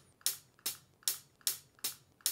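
Sampled hi-hat hits sliced from a breakbeat drum loop, triggered from Impact drum-sampler pads at an even pace of about two and a half a second. The slices keep the recording room's ambience after each hit.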